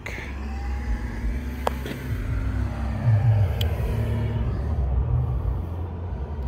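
Low, steady rumble of a motor vehicle engine running, with a faint hum over it and two light clicks, one a couple of seconds in and one past the middle.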